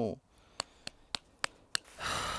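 Five short, sharp clicks, evenly spaced at about three a second, following the tail end of a pained "ow".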